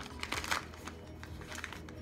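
Packing material rustling and crinkling as a shipped plant is handled and unwrapped, with a few small irregular clicks and taps.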